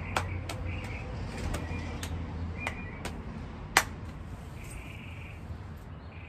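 Outdoor background sound: a low steady hum with faint short bird chirps, and a scattering of sharp clicks, the loudest about halfway through.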